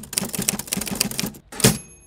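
Typewriter sound effect: a quick run of keystrokes, about eight a second, ending in a harder strike and the short ring of the carriage bell.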